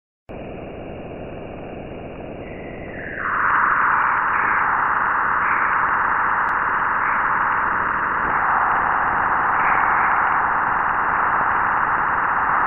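A steady hiss like static, stepping up in loudness about three seconds in and holding there.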